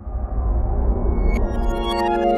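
Electronic logo sting: a swelling synthesizer chord over a deep rumble, with a bright chime about one and a half seconds in.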